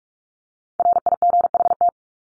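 Morse code sent at 45 words per minute as a steady beeping tone: one word of dots and dashes lasting about a second, starting almost a second in.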